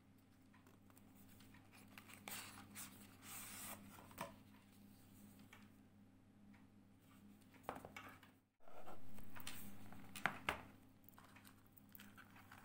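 Cardboard gift box being handled: soft rustling and scraping as the sleeve is slid off and the inner box's lid is lifted, with a few light clicks and knocks near the end, over a faint steady hum.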